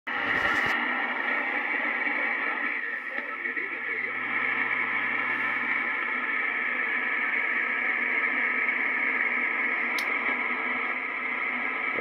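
Swan 700CX HF transceiver receiving a very noisy band through its speaker: steady static and hiss with a faint station's voice buried in it. A single click comes near the end.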